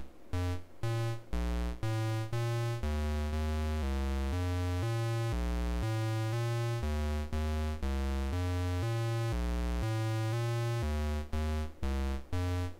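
DIY analogue modular synth playing a stepped bass-note sequence from a dual VCO, about two notes a second, each note shaped by an attack–release envelope through a vactrol VCA. With the envelope's release turned up, the notes lengthen and run into one another, then come short and separated again near the end.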